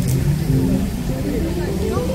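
Indistinct voices of café patrons talking, over a steady low rumble.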